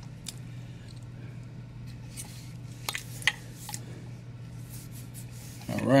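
Faint handling of a heavy statue base: a few soft clicks and rubs spread across a steady low room hum, with no words.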